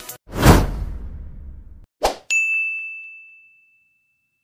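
Sound effects of an animated like-button outro: a loud swooshing hit about half a second in that dies away over a second, a short click near two seconds, then a single bright ding that rings out for over a second.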